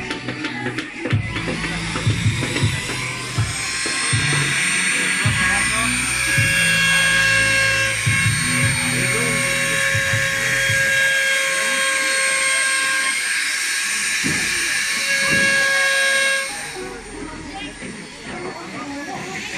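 Small corded handheld electric power tool running on wood with a steady high whine, which cuts off suddenly about sixteen seconds in, heard over background music.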